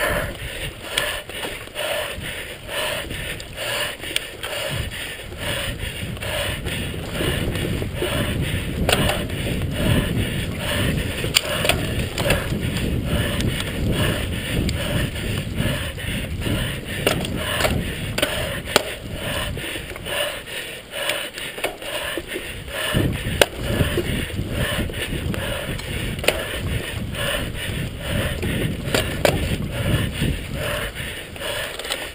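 Mountain bike riding fast over a rough dirt trail: a steady rumble of tyres and wind, with frequent sharp rattles and knocks as the bike jolts over bumps.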